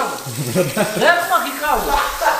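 Water spraying from a salon shampoo basin's handheld sprayer onto a lathered head and into the basin, a steady hiss with a man's voice over it.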